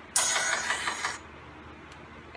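Soundtrack of a short channel-intro video playing through a phone speaker: a loud, noisy, hissing burst lasting about a second, then it drops away.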